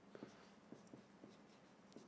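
Faint taps and strokes of a marker writing on a whiteboard, a few soft ticks spread over the moment, close to silence.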